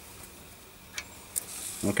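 Faint rustling and handling noise with a light click about a second in and a few soft ticks, followed by a spoken word at the end.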